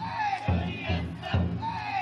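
The big drum inside a futon daiko (taikodai) festival float, beaten with heavy, slightly uneven strokes about twice a second. Over the drum, the crowd of bearers shouts a chant whose calls rise and fall in pitch.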